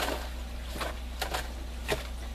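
Several brief rustles and crinkles of root barrier cloth being tucked by hand inside a plastic barrel, over a steady low hum.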